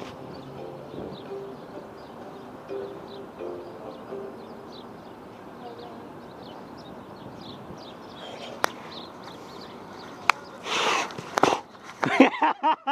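Quiet outdoor ambience with faint, scattered bird chirps over a low steady background. Late on come two sharp clicks, then a brief, louder rushing noise just before the end.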